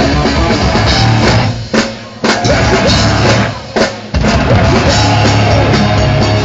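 Hardcore band playing live: distorted electric guitars, bass and drums, loud. The band stops short twice, a bit under two seconds in and again near four seconds, each time coming back in together sharply.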